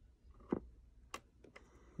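Three faint, sharp plastic clicks from fingers on the push-buttons and case of a Corky doll's built-in cassette player; the middle one is the sharpest.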